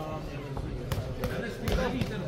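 A few sharp thuds from two boxers exchanging punches in the ring, over voices shouting in the hall.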